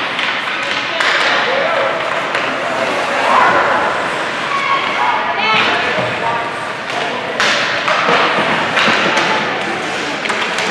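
Ice hockey play echoing in an indoor arena: sticks and puck knocking, with sharp thuds against the boards every few seconds, over indistinct shouting and chatter from players and spectators.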